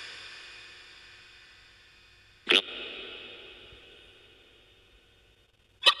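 Two sharp metallic strikes, about two and a half seconds in and again near the end. Each rings on with several steady high tones that fade away slowly, as a struck bell or chime does.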